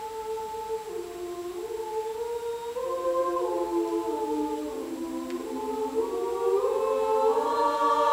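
Women's choir singing a cappella in harmony, holding long chords that move slowly from note to note. The singing swells louder as more voices come in during the last couple of seconds.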